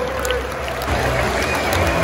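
Large football stadium crowd applauding and cheering, a dense, even wash of clapping and voices.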